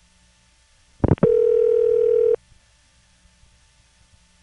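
Telephone line: a click about a second in, then a single steady call-progress tone lasting about a second, the ringback of the time-of-day number that has just been tone-dialed by an automatic answering machine.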